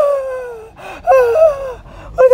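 A man's voice making two long, high whining cries without words, each falling in pitch.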